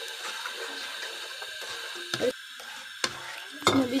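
A spatula stirring and scraping instant pudding mix into hot milk in a nonstick pan, heard as quiet scrapes and light clicks, with a sharper click about three seconds in.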